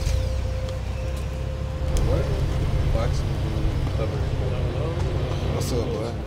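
A large SUV's engine idling, a low steady rumble, with indistinct voices over it from about two seconds in.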